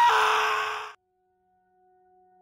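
A cartoon character's loud, raspy scream, cut off abruptly about a second in, followed by near silence with a faint steady tone.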